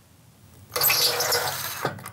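Ryobi cordless impact driver running in one burst of about a second, driving an anchor screw through the door frame's jamb into the concrete block. It starts a little under a second in and stops abruptly.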